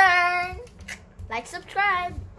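A girl's wordless, sing-song voice: one held high note at the start, then a few short rising-and-falling vocal sounds about a second and a half in.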